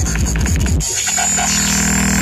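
Electronic dance music from a DJ set played loud over a festival sound system. It is recorded live from the crowd. A driving kick-drum beat drops out just under a second in, leaving a sustained buzzing synthesizer drone.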